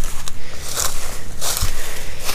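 Footsteps crunching and rustling through dry, harvested corn stalks. There is a dull thump about one and a half seconds in.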